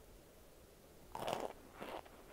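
Biting and crunching a chunk of compressed cornstarch in the mouth: a loud crunch about a second in, then a second, shorter crunch near the end.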